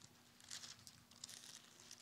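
Faint rustling of thin Bible pages being leafed through by hand, a few soft brushes a moment apart, over a faint steady hum.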